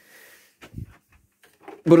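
A soft low thump and a few light knocks of handling, as the unpowered upright vacuum cleaner is moved, and then a man's voice starts near the end.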